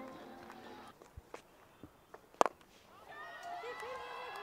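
Faint open-air ground sound with a few small clicks and one sharp click about two and a half seconds in. Faint, distant voices come in during the last second.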